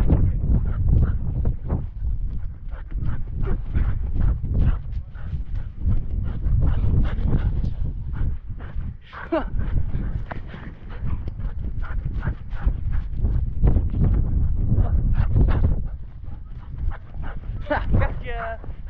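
Close-up sound from a harness-mounted camera on a running Border Collie: a fast, rhythmic run of thumps and huffs from the dog's panting and footfalls in snow, over a heavy rumble of jostling and wind on the microphone. A man laughs briefly about halfway through.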